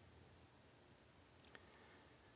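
Near silence: room tone, with two faint short clicks about one and a half seconds in.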